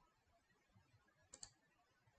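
Near silence broken by a pair of sharp clicks in quick succession about two-thirds of the way in, from a computer mouse or keyboard at the presenter's desk.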